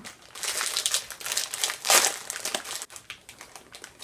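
Small candy packet crinkling as it is handled and opened, a busy run of crackles loudest about two seconds in that dies down near the end.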